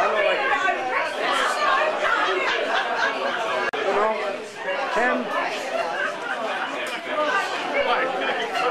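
Background chatter: several people talking at once in overlapping, indistinct conversation.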